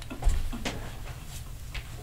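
Quiet room noise with a single soft, low thump about a third of a second in.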